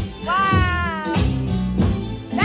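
Background music with a steady beat and bass line, and a high drawn-out vocal note that slides slightly downward about a third of a second in.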